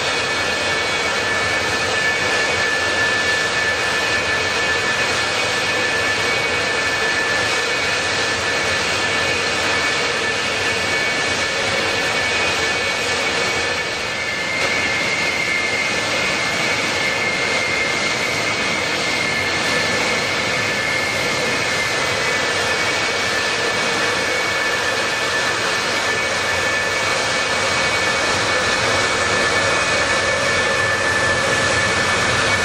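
F-4EJ Phantom II jets' J79 turbojet engines running on the ground: a steady high whine over a dense rush, dipping briefly about halfway through.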